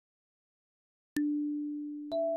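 Silence, then a single kalimba note, D4, plucked about a second in and ringing on as one clear, pure tone.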